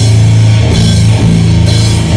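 Sludge metal band playing live: heavy, low guitar chords held over drums, with a cymbal crash near the end. It is recorded loud and close on a phone.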